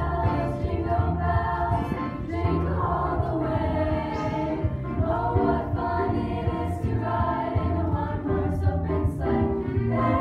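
High school girls' choir singing in harmony, with a low steady bass line beneath the voices.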